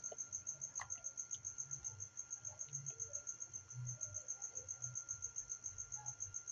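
Insect chirping: a steady high-pitched pulse repeating about eight times a second, with faint irregular low thumps underneath.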